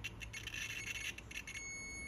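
Multimeter continuity beeper crackling on and off as the probe tip makes intermittent contact with a connector terminal, then settling into a steady high beep about one and a half seconds in. The beep signals continuity to ground on the tail-light circuit wire with the battery disconnected, the sign of a short to ground.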